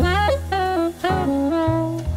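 Smooth jazz instrumental: a saxophone plays a phrase of about four notes that slide and bend in pitch, over a sustained low bass line.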